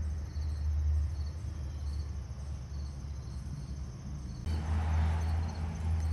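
Crickets chirping faintly in an even, repeating rhythm over a steady low rumble; a rustling sets in about four and a half seconds in.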